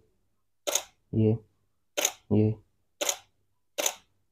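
Canon 7D DSLR shutter and mirror firing four single shots, about one a second, each a short click.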